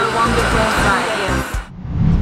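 Steady rushing air noise of an airliner cabin, with voices over it, cutting off about a second and a half in.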